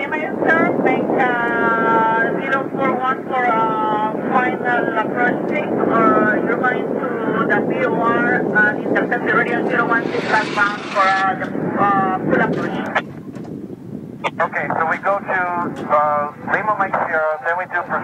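Air traffic control radio transmissions: voices over a band-limited radio channel with steady hiss underneath, a short burst of louder hiss about ten seconds in, and a brief break in the talk about thirteen seconds in.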